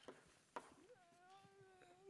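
Near silence: room tone, with a faint tap of chalk on a blackboard about a quarter of the way in. A faint, short held tone follows from about halfway to near the end.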